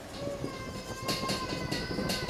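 Dry-erase marker squeaking on a whiteboard as letters are written: a thin sustained squeal that sags slightly in pitch, with short scratchy strokes.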